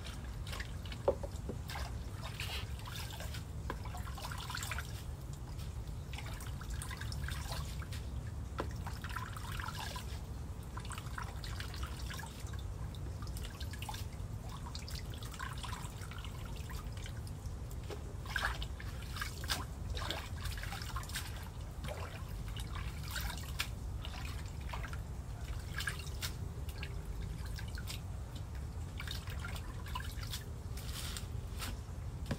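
Water dripping and splashing as leafy greens are rinsed by hand in a plastic tub of water and lifted out dripping in a colander. A steady low rumble runs underneath.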